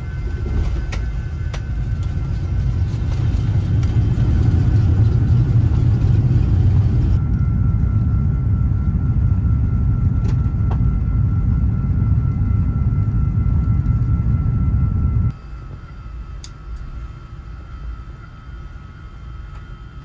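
Heavy, steady low rumble of an Airbus A380 on the ground after landing, heard inside the cabin. It builds over the first few seconds and cuts off abruptly about fifteen seconds in, leaving a much quieter hum. A thin steady high tone runs throughout.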